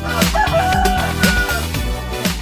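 Background music with a steady beat, and over it a rooster crowing once: a long held call starting about half a second in and lasting about a second.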